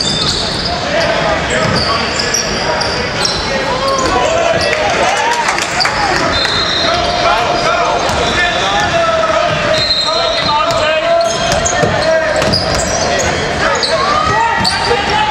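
Indoor basketball game in a large gym: the ball dribbling on the hardwood court, sneakers squeaking, and players and spectators calling out, echoing in the hall.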